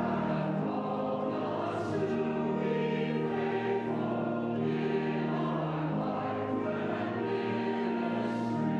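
A congregation and choir singing a hymn together, accompanied by pipe organ, with long held chords.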